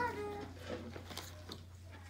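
A high-pitched voice, likely a child's, sounds briefly at the start, then fades to faint scattered room sounds over a steady low electrical hum.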